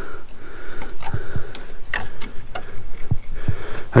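A long steel screwdriver levering a rusted front brake caliper off its disc: several sharp metallic clicks and knocks at irregular intervals as the caliper is pried outward and starts to come free.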